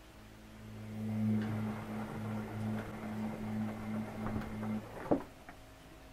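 Paper catching and burning in the firebox of a brick house stove, crackling with scattered small clicks over a steady low hum that stops shortly before five seconds in. A single sharp knock follows about five seconds in.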